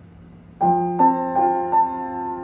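Piano playing the opening of a slow accompaniment: notes start about half a second in, struck roughly every half second and left ringing into one another. Before the first note there is only a faint steady hum.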